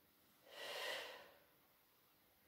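A single audible breath from a woman exerting herself as she pushes up out of a squat in a sit-to-stand exercise. It starts abruptly about half a second in and fades out within a second.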